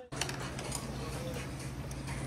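Restaurant dining-room background: a steady low hum with faint voices and small clicks in the background, and no close speech.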